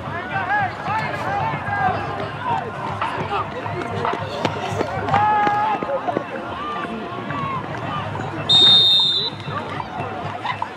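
Spectators and players shouting during a football play, then a referee's whistle blown once, a single sharp blast of a little under a second near the end, the loudest sound here, marking the play dead.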